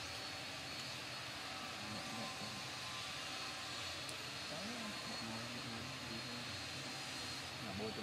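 Steady outdoor background hum with faint, indistinct voices in the distance, no single sound standing out.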